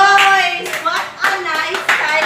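A group of teenage girls calling out excitedly in high voices while clapping their hands, with a run of sharp claps through the middle and end.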